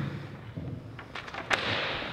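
Handling noise from a handheld microphone as it is passed and taken up. A few light clicks come about a second in, then a sharp knock about one and a half seconds in, followed by brief rustling.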